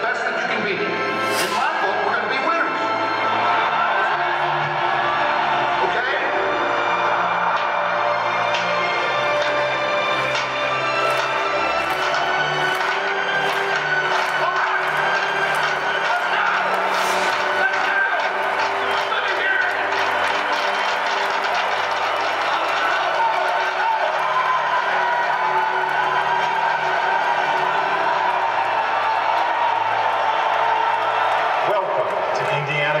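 Soundtrack of a pregame hype video played over an arena's public-address system: music with a beat and a voice mixed in, filling the room.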